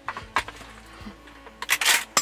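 A 20-gauge shotgun being handled: a few light clicks, then a short, louder metallic clatter near the end.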